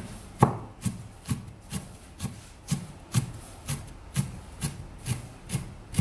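Large kitchen knife slicing green onion stalks on a wooden chopping board: a steady run of knife strokes, about two a second, each ending in a knock of the blade on the wood.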